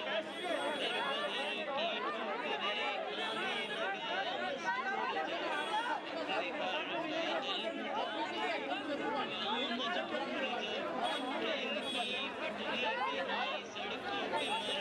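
A tightly packed crowd of many people talking at once: steady overlapping chatter in which no single voice stands out.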